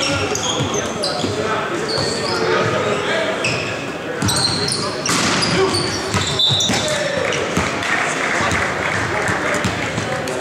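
Indoor volleyball rally in a reverberant gym: players shouting, sneakers squeaking on the hardwood court, and the ball struck sharply several times in the middle, with crowd noise rising after the play in the second half.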